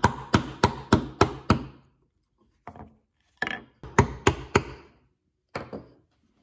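Wood chisel struck repeatedly to chop out the waste between box-joint fingers in a wooden board. It starts with a run of about five sharp, quick strikes, then pauses. A few more strikes come around the four-second mark, and two close together near the end.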